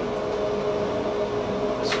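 A steady hum with an even hiss, and one sharp click near the end, likely the metal tongs or a tortilla touching down by the frying pan.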